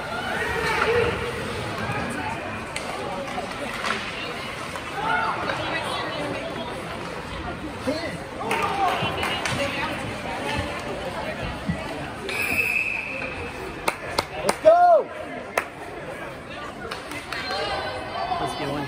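Hockey rink din: spectators talking in the stands and the clack of sticks and puck on the ice. About two-thirds of the way through a referee's whistle sounds once, briefly, followed by a loud call from a voice and a few sharp knocks.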